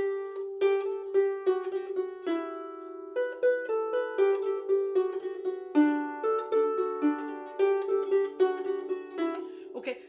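Celtic lever harp played: a jig melody plucked note by note, its long notes ornamented with cut-and-tip rolls in which G is the inner note. The strings ring on under each quick cluster of ornament notes.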